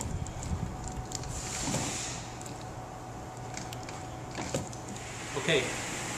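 Quiet room tone: a faint steady hum with a few soft scattered clicks and knocks, then a man's voice near the end.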